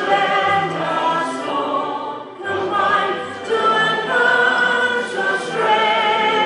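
A choir singing a slow anthem with long held notes, pausing briefly between phrases about two seconds in.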